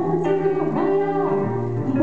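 Live band music led by guitar, a short instrumental stretch of a song just before the vocal comes back in.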